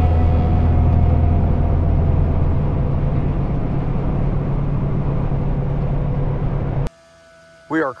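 Semi truck's engine and road noise droning steadily inside the cab at highway speed. The drone cuts off abruptly about a second before the end, and a man starts to speak.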